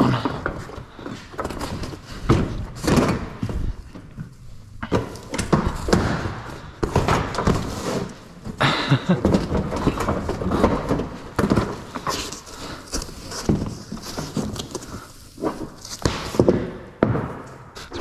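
A BedRug truck-bed mat being unrolled and pressed flat on the floor by hand: irregular dull thumps and handling noise from the thick, squishy mat.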